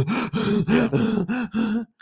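A man laughing: a run of breathy, pitched "ha" pulses, about five a second, that stops just before the end.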